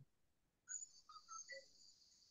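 Near silence, with a few faint, short high-pitched chirps and a thin high hiss starting just under a second in.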